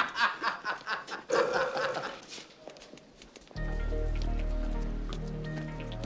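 Two men laughing in bursts that die away over about two seconds. About three and a half seconds in, background film-score music starts suddenly, with a steady low bass underneath.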